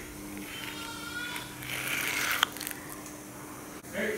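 Steel spoon scraping and scooping frozen mango ice cream in a glass bowl: a soft scraping rasp in the middle, then a single sharp clink of spoon on glass about two and a half seconds in, over a faint steady hum.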